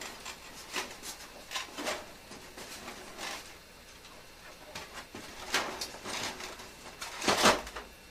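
Plastic automatic egg turner and its trays being lifted, shifted and set down into an incubator base: scattered light knocks, scrapes and rustles, with the loudest clatter near the end.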